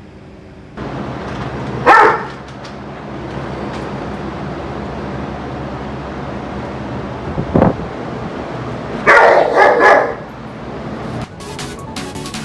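Akita barking from inside a wire kennel crate at another dog passing: one loud bark about two seconds in, a thump later, then a quick burst of three or four barks near the end. It is the dog-reactive aggression that is the dog's problem before training.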